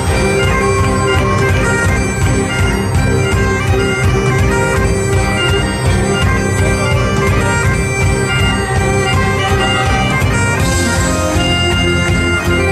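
Live folk-rock band led by Great Highland bagpipes playing a melody over their steady drone. Fiddle, accordion and electric guitar play along over a steady beat.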